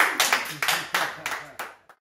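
A small group of people clapping hands unevenly, mixed with laughing voices. The clapping stops abruptly near the end.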